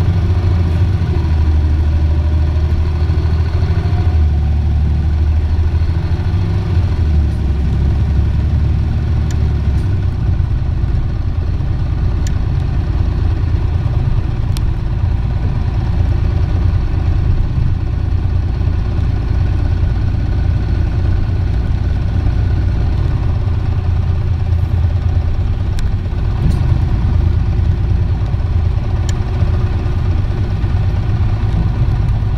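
Diesel engine of an Isuzu PJ-LV234N1 city bus, heard from inside the passenger cabin as the bus runs. There is a rising whine in the first few seconds, and the low engine note changes about ten seconds in.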